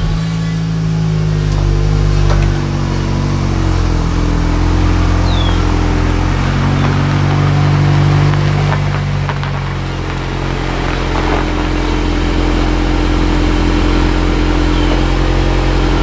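VW Golf R's turbocharged four-cylinder engine running just after being started, idling as the car reverses slowly out of a garage, its note shifting slightly as it moves. The sound is loud and steady and stops suddenly at the end.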